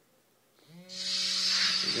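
Mobile phone start-up sound from its small speaker as it boots: a whooshing hiss with a steady low tone under it, starting a little over half a second in.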